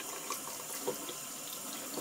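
Tap water running onto the magnet rod of a central heating magnetic filter and splashing into a stainless steel sink, flushing the black magnetic sludge off it. A steady running-water sound with small splashes scattered through it.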